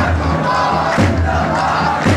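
Large crowd of protesters chanting in unison, with a sharp beat about once a second marking the rhythm.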